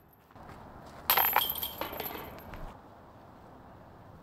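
A disc slamming into the metal chains of a disc golf basket about a second in, the chains jangling and ringing briefly before settling.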